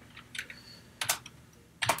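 Computer keyboard being typed on: a few separate keystrokes, the loudest about a second in and near the end.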